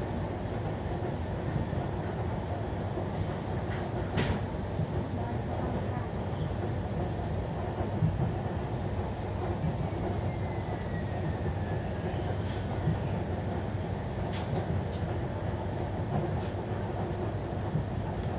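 Steady low rumble inside a suburban electric train carriage while it runs. A few sharp clicks or knocks stand out, the loudest about four seconds in, with more later on.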